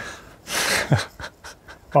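A person's short, breathy exhale close to the microphone, about half a second in, followed by a faint click.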